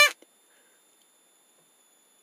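The end of a drawn-out, high-pitched voiced "ding", cut off just after the start, then near silence with only a faint steady high whine.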